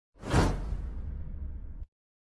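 Whoosh sound effect with a deep rumble under it, the smoke-burst sound of a subscribe-button animation. It swells quickly just after the start, then holds as a low rumble and cuts off suddenly near the end.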